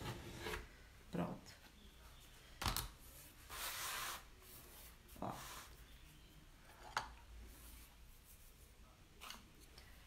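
Faint rubbing and scraping as hands and a small spatula smooth freshly glued scrapbook paper down onto an MDF box lid. There are a few light knocks against the tabletop and one longer scrape about three and a half seconds in.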